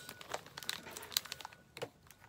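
Clear plastic pocket-letter sleeves crinkling as they are handled and unfolded, with scattered sharp crackles and a louder one near the end.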